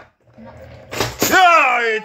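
Plastic snap as the toy pirate ship's spring-loaded kraken head pops up out of the hull, about a second in, followed at once by a long excited vocal cry falling in pitch.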